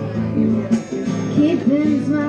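A woman singing a melody into a microphone, accompanied by strummed acoustic guitar, in a live performance.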